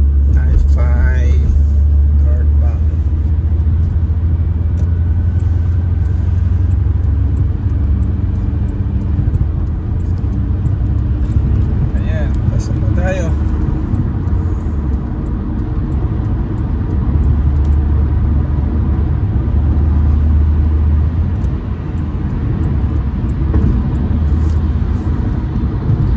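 Steady low road rumble of engine and tyres inside a car's cabin as it merges onto and cruises along a freeway.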